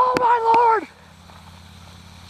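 A man's high-pitched, drawn-out shout of surprise ("Oh!") lasting under a second, then a faint, steady low hum.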